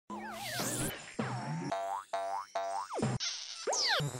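Playful cartoon intro jingle built from boing sound effects over music: a wobbling, falling glide, then a run of quick springy boings, then more falling pitch slides near the end.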